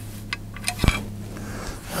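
A few light metallic clicks and taps, the sharpest just under a second in, as the painted metal back cover is lifted off an old rim latch and its loosened screw comes out.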